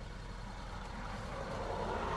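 Car engine idling, a steady low rumble heard from inside the cabin.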